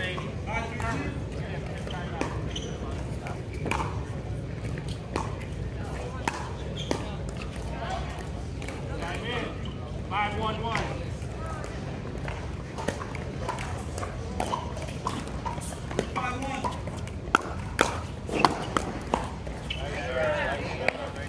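Pickleball paddles hitting plastic balls: sharp pocks scattered throughout, loudest in a quick cluster near the end, over a steady low rumble.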